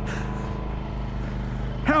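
A small engine on the boat running steadily, an even, unchanging hum.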